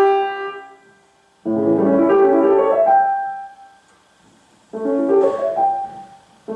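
Grand piano played solo: a chord rings out and fades at the start, then two short chordal phrases, about a second and a half in and near the end, each left to die away into a pause.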